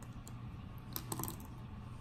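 A few faint, light clicks, most of them in a short cluster about a second in, from a pen and hand on a desk, over a quiet room hum.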